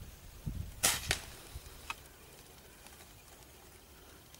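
A single shot from a Diana 34 Classic break-barrel spring-piston air rifle: one sharp crack about a second in, followed at once by a second, weaker crack and a couple of faint clicks.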